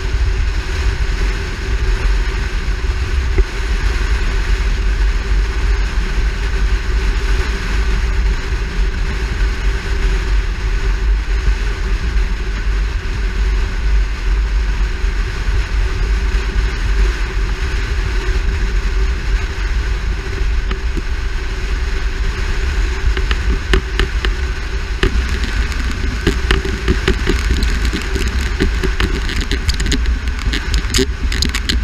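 Steady wind rush and road noise from a car driving at road speed, picked up by a camera mounted outside on its hood. In the last few seconds a run of sharp ticks and clicks comes in over it.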